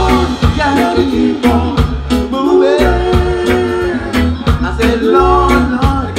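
Live reggae band playing: sung vocal harmonies over a steady drum beat and deep bass line.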